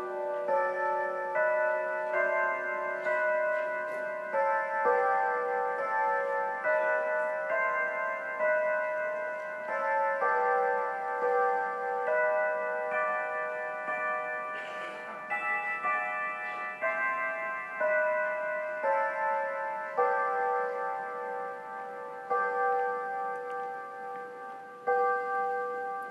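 Bell-like chimes playing a slow melody, one note at a time, each note ringing on under the next.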